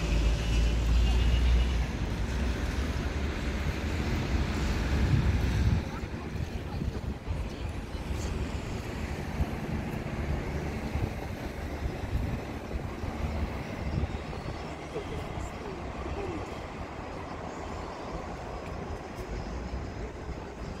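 City street traffic noise, a steady hum of cars on the road. Wind rumbles on the microphone for about the first six seconds, then stops suddenly.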